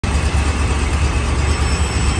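1967 Corvette's Tri-Power 427 V8 idling steadily, a deep even rumble, while its three two-barrel carburetors are being adjusted.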